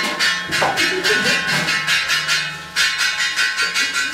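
A rapid, even run of metallic strikes, about five a second, each one ringing on.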